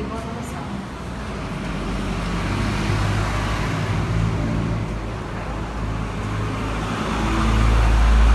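Steady rushing background noise with a low rumble, growing louder toward the end.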